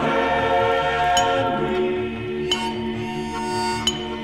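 A vocal choir holds a long, sustained closing chord, which shifts about one and a half seconds in. Over it a bright, ringing metallic clink sounds three times, about every second and a half.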